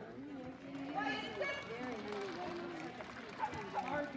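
Indistinct voices of several people talking in the background.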